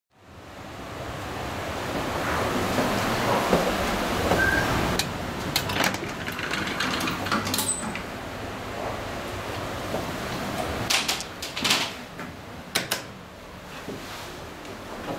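Steady hiss of room noise fading in, then scattered sharp clicks and knocks from about five seconds in, loudest in a cluster a few seconds before the end.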